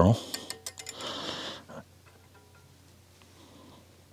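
A few light clicks and a short rustle from the tyer's fingers handling peacock herl and thread at the fly-tying vise, over about the first second and a half, then near quiet.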